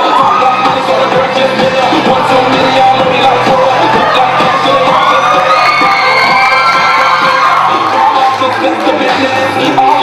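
Hip-hop backing track playing loudly through a stage speaker, with an audience cheering and whooping over it; pitched whoops or vocalising rise and fall around the middle.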